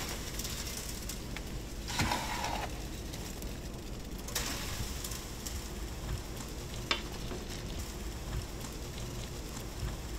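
A shovel scraping and tipping its load into a metal chute at a foundation pit, the loudest scrape-and-pour about two seconds in and another a little after four seconds, over a steady crackling outdoor noise.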